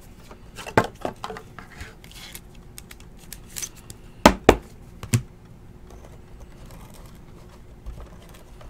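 Trading cards and rigid plastic top loaders being handled on a table: scattered light clicks and taps of plastic, with two sharp clacks close together about four seconds in and another just after five seconds.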